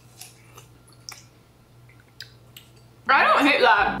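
Faint chewing and small wet mouth clicks as watermelon is eaten, a few soft ticks over about three seconds. Then a loud voice breaks in near the end.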